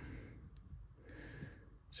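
Faint light clicks of a drill bit and small parts against a small-engine carburetor's metal body as a new needle seat is worked into its bore, with a soft breath in the middle.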